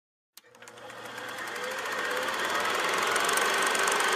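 Fast, even mechanical clatter from a retro-video intro sound effect: it starts with a click and swells up out of silence.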